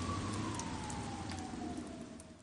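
A single siren tone, held and then sliding slowly downward from about half a second in, as if winding down, over a steady hiss with scattered sharp ticks.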